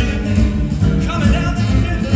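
A live band playing a song, with a voice singing over the band.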